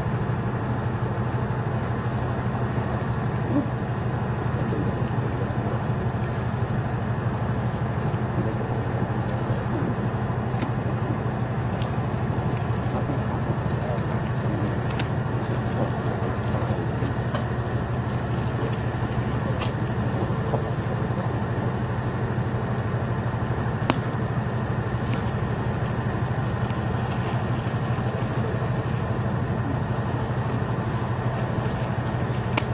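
A steady low hum with an even background noise throughout, broken by a few faint sharp clicks.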